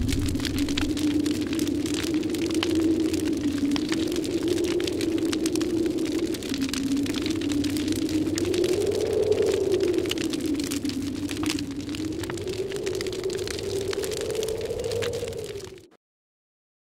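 Intro soundtrack: a low, slowly wavering drone under dense crackling, cutting off abruptly near the end.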